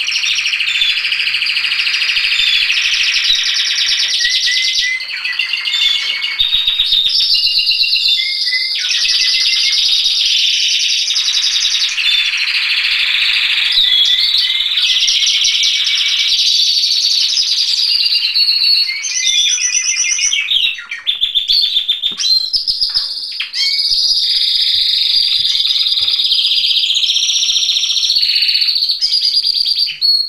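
Domestic canaries singing a continuous song of fast trills and rolls with short up-sweeping whistled notes, with a brief lull about two-thirds of the way through.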